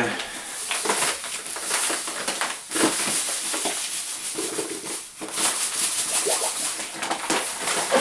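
Granulated sugar pouring out of a paper bag into a plastic bucket as a steady hiss, with the paper bag crinkling and rustling as it is opened and tipped.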